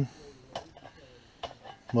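A short pause in a man's talk: near-quiet with two faint clicks, about half a second and a second and a half in, before his voice comes back near the end.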